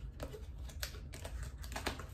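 Paper-wrapped gift being handled: faint paper rustling broken by several short, sharp clicks and crackles of the wrapping.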